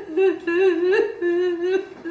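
A woman humming without words, one wavering pitched line that rises and falls in short phrases.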